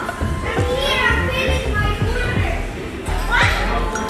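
Children calling out and shouting while playing in an indoor play structure, with music underneath.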